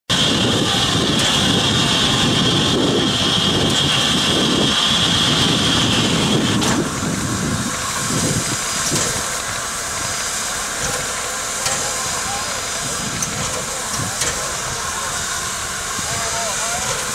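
Nickel Plate Road 765, a 2-8-4 Berkshire steam locomotive, standing and hissing steam. A loud steady hiss cuts off suddenly about seven seconds in, leaving quieter steam and rumbling machine noise from the engine.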